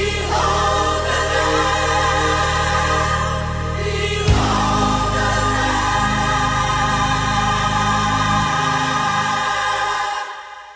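Gospel choir singing long held chords over instrumental accompaniment, moving to a new chord about four seconds in, like the closing bars of a song.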